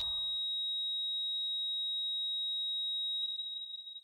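A steady, high-pitched electronic sine tone, like a ringing in the ears, starts abruptly and holds level, then fades out near the end.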